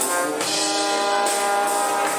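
Brass band playing: trumpets, trombone and tubas over a drum kit, with held brass notes and cymbal beats.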